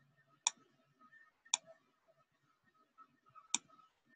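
Three sharp computer mouse clicks, one about half a second in, the next a second later and the last near the end, over faint room tone.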